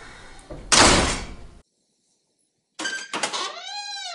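A door banging shut about a second in, a short loud noise that dies away quickly; then the sound cuts out entirely. Near the end a drawn-out voice rises and falls.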